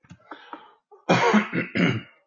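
A man coughing: two loud coughs, about a second in and again near the end, after some quieter throat sounds.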